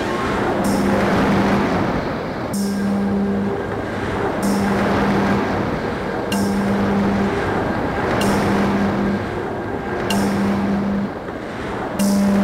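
Experimental electronic soundtrack: a low held tone pulses on for about a second roughly every two seconds, each pulse opening with a short bright hissing crash, over a dense rumbling noise wash.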